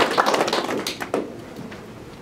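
Small audience applauding, the clapping thinning to a few last claps and dying away about a second in.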